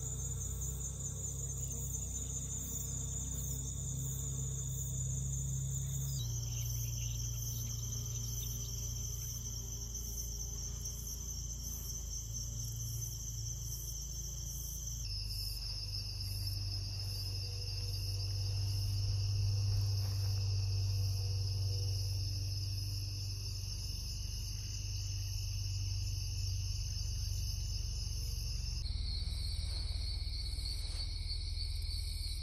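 A steady, high-pitched chorus of field insects trilling continuously, with a low steady hum underneath. The pitch of the trill shifts abruptly a few times as the scene changes.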